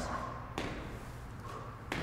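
A person's feet landing squat jumps on the floor: a few sharp thuds at uneven spacing, one about half a second in and another near the end.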